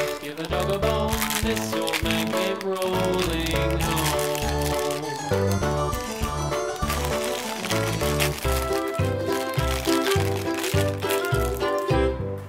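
Children's background music over the crinkling of plastic foil wrappers as hands unwrap an L.O.L. Surprise doll's blind packets.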